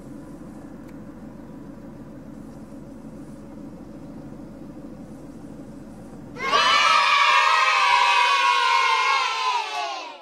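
A steady low outdoor rumble, then about six and a half seconds in a sudden loud burst of many children's voices cheering and shouting together, sliding down in pitch and fading out near the end.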